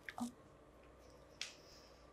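Mouth sounds of a woman reacting to a sour taste: a lip smack with a short grunt at the start, then a sharp hiss about a second and a half in.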